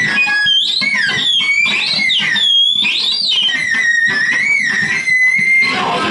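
Live power electronics noise: loud, high squealing electronic tones that warble and glide up and down, chopped into stuttering bursts by repeated short cut-outs.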